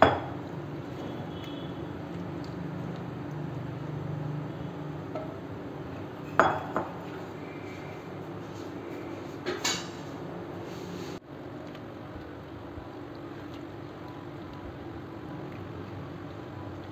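Wooden spatula stirring lemon pieces in liquid in a nonstick pan, with a few short knocks against the pan at the start, about six seconds in and near ten seconds, over a steady low hum from the stove.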